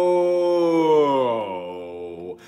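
A man's singing voice holding a long, drawn-out "oh", which about a second in slides slowly down in pitch and fades away.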